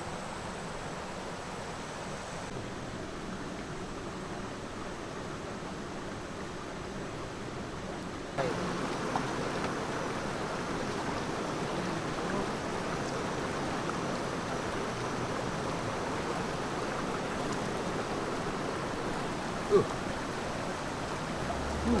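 Steady rushing of a shallow river flowing over rocks, a little louder after about eight seconds.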